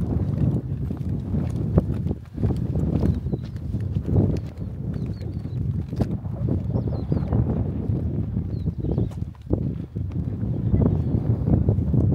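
Footsteps on a stone-paved path, heard as a run of short knocks, under wind buffeting the microphone with a low rumble that rises and falls with the gusts.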